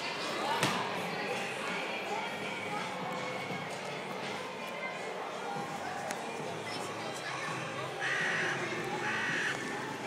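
Busy shop ambience: distant voices and background music, with a sharp click about half a second in and three short, louder calls about a second apart near the end.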